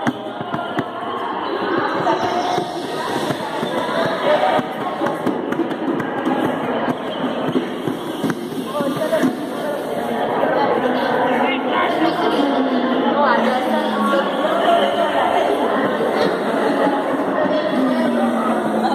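Small hand drums, a painted tube drum and a hide-headed wooden drum, tapped repeatedly with the hand, with people's voices talking throughout.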